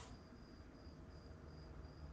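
Near silence with a faint cricket chirping in a steady run of short, high, evenly spaced pulses.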